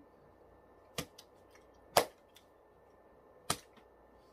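Three sharp clicks, about a second in, at two seconds and near three and a half seconds, the middle one loudest, with a few faint ticks between.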